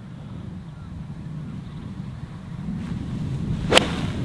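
Wind buffeting the microphone, building slowly, then a single crisp click near the end as an eight iron strikes a golf ball off the tee.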